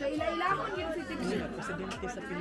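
Overlapping chatter of children and adults, with a steady low beat of thumps underneath, about two or three a second.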